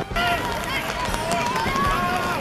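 Several boys shouting and cheering at once, their voices overlapping in a jumble of celebratory yells.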